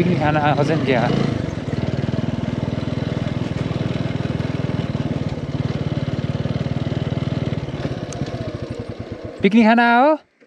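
Motorcycle engine running steadily, its firing pulses slowing and dying away near the end as it winds down. A short voice is heard about half a second in, and speech just before the end.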